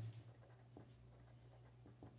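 Red felt-tip marker writing on paper, faint, over a low steady hum.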